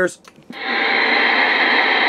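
Steady static hiss from a CB radio transceiver's receiver on the 11-meter band. It comes up about half a second in, after a brief pause, once the microphone is released and no station is transmitting.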